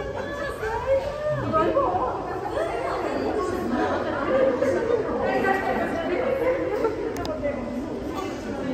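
Overlapping chatter of a small crowd, several people talking at once without any single clear voice.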